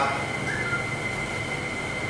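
A pause between spoken phrases filled with steady background noise: an even hiss with one faint constant high whine.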